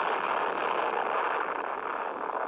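Steady hiss of static on an open telephone line carried on air, with no voice on it.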